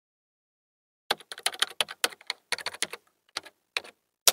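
Computer keyboard typing: a rapid, irregular run of key clicks starting about a second in.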